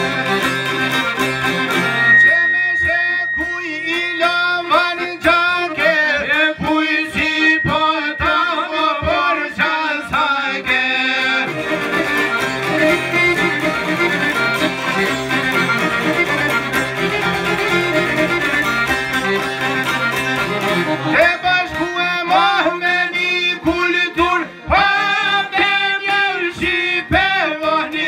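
Live Albanian folk music: long-necked lutes (çifteli and sharki) plucked in a busy strummed texture over accordion. A man sings the melody into a microphone in passages, with a stretch between about 11 and 21 s carried by the instruments.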